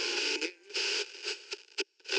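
Tinny, hissy radio sound that comes and goes in short chunks. It drops out briefly about halfway through and again near the end.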